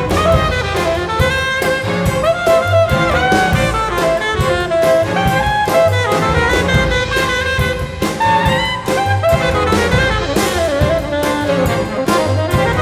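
Tenor saxophone playing a melodic line over a chamber string orchestra, with a drum kit keeping a steady beat.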